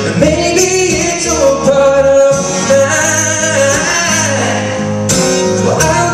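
A man singing live into a microphone while strumming an amplified acoustic guitar.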